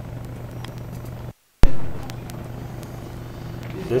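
Steady low electrical hum. About a second and a half in, it drops out briefly to dead silence, then comes back with one loud click, where the recording is cut.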